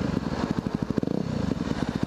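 2010 Yamaha WR250R's single-cylinder four-stroke engine running at low revs while the bike is ridden, its exhaust pulses coming through as an even, rapid chugging.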